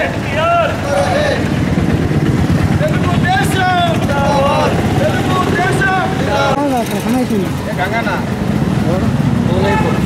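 Several men's voices talking and calling out together over a steady low rumble of street traffic.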